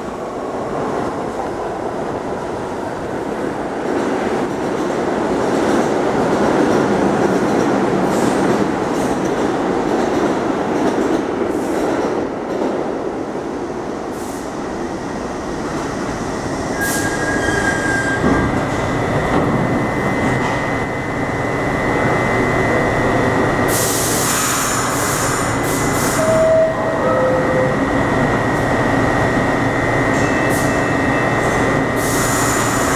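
New York City subway train of R62-series cars rumbling into the station and braking to a stop. A steady high-pitched squeal sets in about halfway through, and a few short hissing bursts come near the end as it halts.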